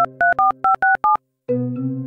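Touch-tone dialling on a smartphone keypad: a quick run of about six short beeps, each a two-note tone, as a number is dialled.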